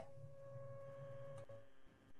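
Near silence on the call line: faint room tone with a faint steady hum and a faint thin tone that fade out about three-quarters of the way through, and a faint click about a second and a half in.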